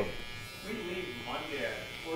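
Electric hair clipper buzzing steadily as it edges a client's hairline, with faint voices under it.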